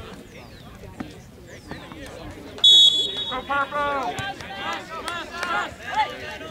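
Referee's whistle: one short, shrill blast about two and a half seconds in, signalling the restart of play. Shouting voices from players and spectators follow.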